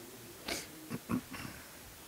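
A sniff, then a few short, low throat sounds close together, like a person clearing their throat.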